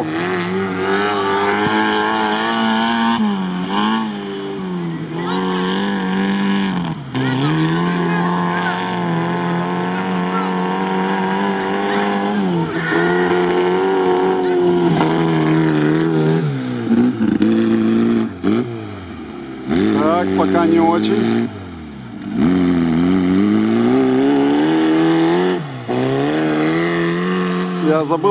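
Engine of a lifted Zaporozhets-bodied off-road car revving hard on a sand course. Its pitch climbs and then falls back many times, with short drops between the climbs as the driver shifts gears and lifts off for turns.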